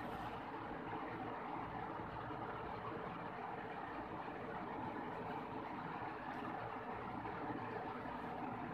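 Steady background noise: an even hum and hiss with no distinct events.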